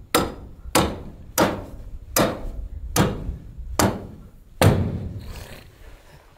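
Hammer blows driving a rebar stake into the ground: seven strikes about three-quarters of a second apart, each ringing briefly, the last one the loudest.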